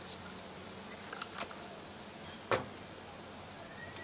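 Faint handling noises and one sharp click about two and a half seconds in, from small containers being handled while mixing casting resin, over a steady low background hiss.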